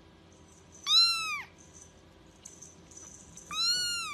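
A kitten meowing twice, about two and a half seconds apart: short, high meows that rise and then fall in pitch.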